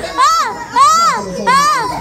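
Loud, high-pitched laughing and squealing from several people, a run of short rising-and-falling shrieks with one longer held squeal near the end.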